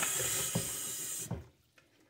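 Water splashing in a kitchen sink as a juicer part is scrubbed with a dish brush in a basin of water, with a few light knocks. The sound stops abruptly about one and a half seconds in.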